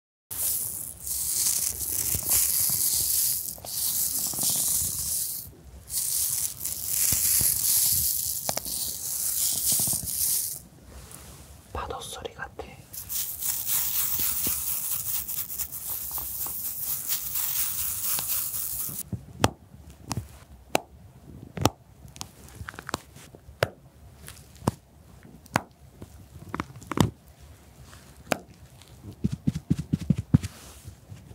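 Cosmetic compact cases handled close to a microphone: stretches of loud, scratchy hissing a few seconds long through the first half, then a run of sharp clicks and taps.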